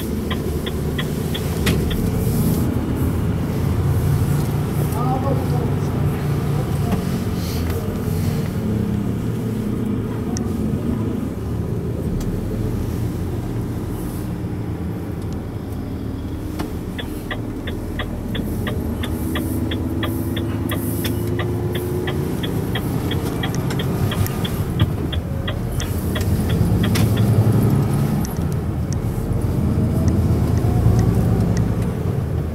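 Renault Trucks T 460's 11-litre six-cylinder diesel heard from inside the cab, running steadily as the truck pulls away and drives, its pitch rising around the middle as it accelerates. A regular light ticking, about three clicks a second, sounds near the start and again through much of the second half.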